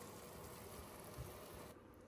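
Near silence: a faint steady hiss of room tone that drops to an even quieter background near the end, with one tiny soft knock just after the middle.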